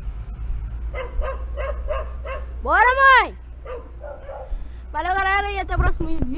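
A dog barking in quick short yaps, about four a second, then a loud cry that rises and falls in pitch, and a longer wavering cry near the end.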